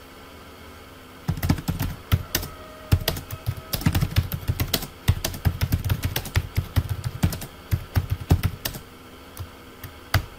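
Typing on a computer keyboard: a quick, uneven run of key clicks that starts about a second in and stops about a second before the end.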